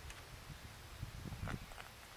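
A few faint knocks and clicks of handling at the muzzle of a matchlock musket as a musket ball is loaded into the barrel, about a second in.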